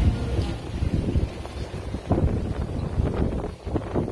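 Wind buffeting the microphone in an uneven low rumble, with a few brief knocks.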